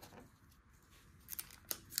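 Quiet handling of baseball cards and a foil card pack: faint rustling, then a few short crisp crackles near the end as the sealed pack is picked up.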